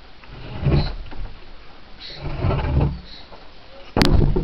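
Two dull, low thumps and scuffs of handling and movement, with a sharp knock right at the end. No chainsaw is running.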